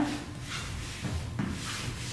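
Soft scuffs and slides of dance shoes on a studio floor as a dancer moonwalks, a few faint brushing sounds over a steady low hum.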